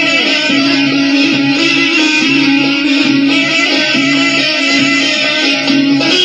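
Instrumental music led by a plucked string instrument playing a melody over a held low note, with no voice.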